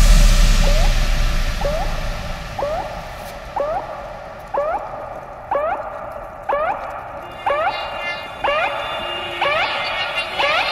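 Breakdown of an electronic bass house track. A held low bass sound fades out while a short rising synth blip repeats about once a second, growing louder, with no drums.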